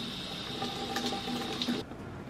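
Kitchen faucet running, its stream splashing over strawberries held in the hands above a stainless steel sink; the tap is shut off near the end.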